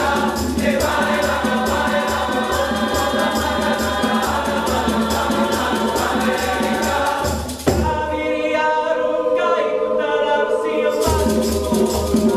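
Large mixed choir singing in parts over conga drums and hand percussion keeping a steady beat. About two-thirds of the way through the percussion drops out and the choir holds chords alone for a few seconds, then the beat comes back near the end.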